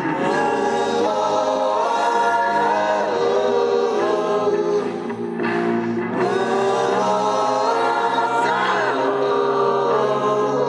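Rock band playing live with sung vocals: long held notes that slide up and down over a full, steady band sound.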